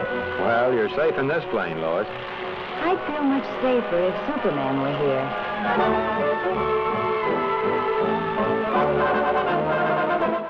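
Brass-led orchestral cartoon score. Gliding figures in the first few seconds give way to broad sustained chords.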